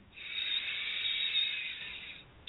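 A woman's long, audible breath in close to the microphone: a soft hiss lasting nearly two seconds that fades out near the end.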